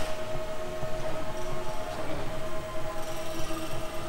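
A steady machine drone with one constant mid-pitched whine held unchanged throughout, over a background hum.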